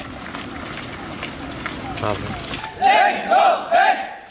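Trainees running on a paved road, with a patter of footfalls, then three loud shouted drill calls in quick succession near the end, like a marching cadence.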